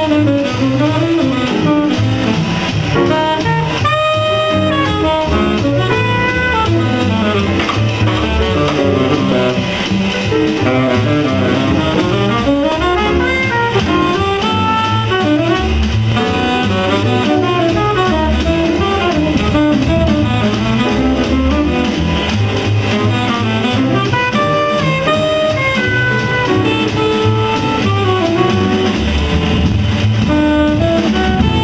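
Live jazz: a saxophone plays a continuous melodic line over a drum kit and double bass.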